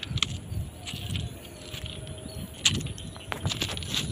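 Footsteps on railway track ballast gravel: irregular low crunches with a few sharper clicks.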